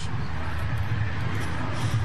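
Steady background noise from a baseball radio broadcast: an even hiss with a low hum underneath, in a gap between the announcer's words.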